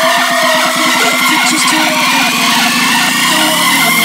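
Electronic dance music build-up in a jumpstyle bootleg remix. A fast drum roll tightens and rises in pitch under a noise sweep and a slowly rising synth tone.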